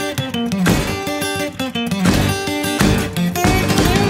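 Instrumental break of a small band: two acoustic guitars strummed and picked over electric bass and drum kit, in a steady country-rock rhythm with no vocals.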